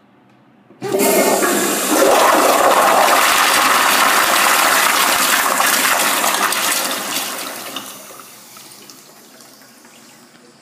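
A 1980s Eljer Auburn blow-out toilet flushing on a flushometer valve. A sudden loud rush of water starts about a second in and stays strong for several seconds, then fades to a trickle near the end.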